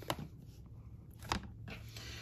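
A clear plastic quilting ruler being slid into place and set down over a cloth towel on a cutting mat: a few faint light taps, the loudest about a second and a third in.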